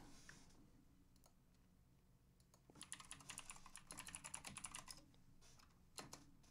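Faint computer keyboard typing: a quick run of keystrokes about halfway through, after a couple of near-silent seconds, as a search is typed in.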